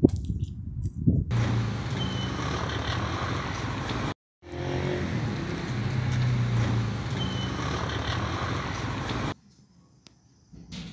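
Steady rumble and hiss with a low hum throughout, after a few knocks in the first second. It cuts out briefly about four seconds in and stops abruptly just after nine seconds.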